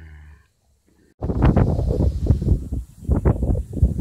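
A foal rolling on her back in grass: loud, rough, irregular rustling and scuffing that starts abruptly about a second in.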